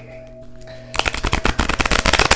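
A deck of tarot cards being shuffled by hand: a fast, dense run of crisp clicks starting about a second in, over soft steady background music.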